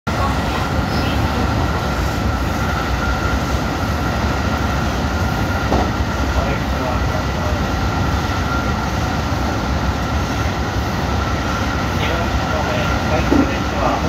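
Running noise of an electric train heard from inside the carriage: a steady low rumble of wheels on rail, with a faint steady high tone over it.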